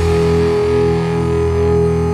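Distorted electric guitar chord held and left ringing, a single high note sustained steadily over it, with no drums.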